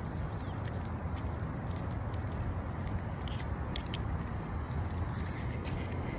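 Wind buffeting a phone's microphone, a steady low rumbling noise with a few faint ticks.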